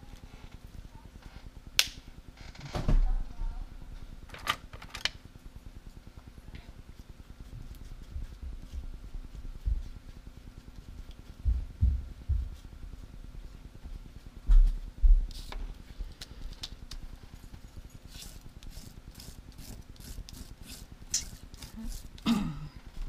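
Art supplies being handled on a desktop: scattered clicks and taps with a few dull knocks, then a quick run of clicks near the end.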